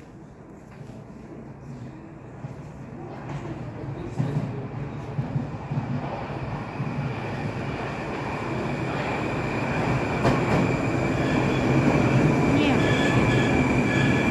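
Moscow Metro 81-765 "Moskva" train approaching and running into the station, growing steadily louder as it nears and passes along the platform. A high steady whine comes in about halfway through and strengthens toward the end.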